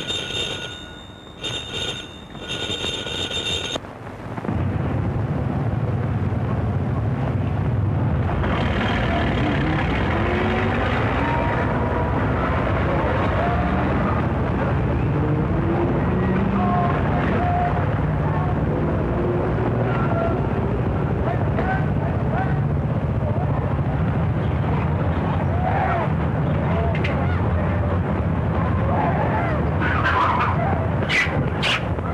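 A telephone bell rings in two short bursts as a call is put through. About four seconds in it gives way to a steady, loud, rumbling din that carries to the end.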